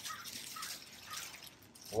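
Faint rustling and crinkling of a thin black plastic trash-can cover as it is pulled off the bin lid by hand.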